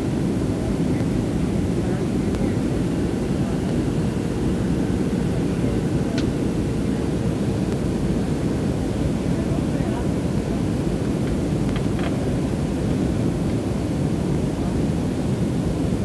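Steady, low cabin noise of a jet airliner in flight: engine and airflow rumble heard from inside the cabin, with a couple of faint clicks.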